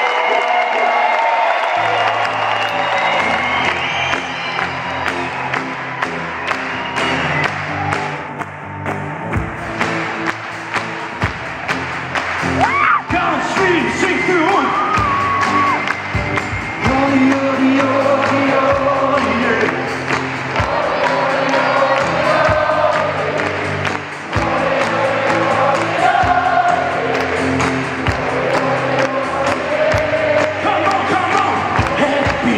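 Live acoustic band music, with a man singing over guitar, bass and drums, and a large audience singing along and cheering. Low bass notes come in about two seconds in.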